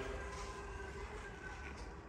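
Power tailgate of a Mercedes-Benz GLC closing on its electric motor after a foot-wave under the bumper: a faint, steady whir with a few thin tones.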